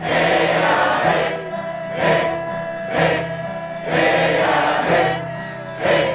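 A group of voices singing together over a steady beat of about one accent a second, with a sustained low tone beneath.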